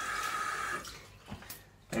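Water running from a single-lever mixer tap into a ceramic bathroom basin, shut off just under a second in so the flow dies away, followed by a few faint ticks.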